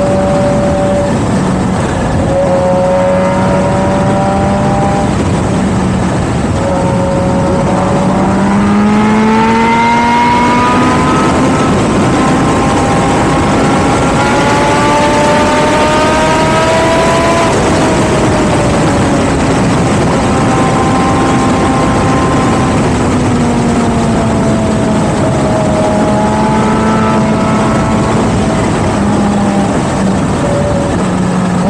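Motorcycle engine under way with heavy wind noise on the microphone. Its pitch climbs as it accelerates from about 8 s in, holds high, drops briefly just past the middle, then rises gently again.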